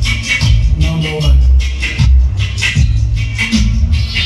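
Recorded music played loud through a sound system, with heavy pulsing bass and a steady beat, mixed from a DJ controller.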